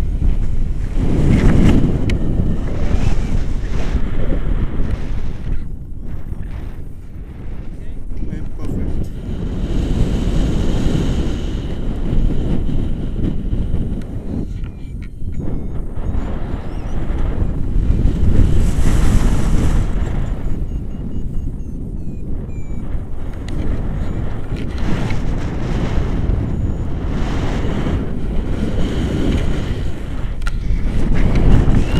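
Airflow buffeting the camera microphone on a tandem paraglider in flight: a loud, gusting rush of wind that swells and eases, dipping twice and peaking about two-thirds of the way through.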